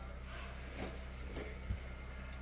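Quiet room tone with a steady low hum, a faint murmur just under a second in, and a soft knock near the end.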